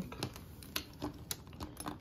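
Light clicks and taps of plastic and metal parts on a new sewing machine being handled by hand around its needle plate and bobbin area, about five or six sharp irregular clicks.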